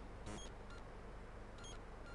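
Quiet room tone with a low hum, crossed by three short, faint high-pitched beeps.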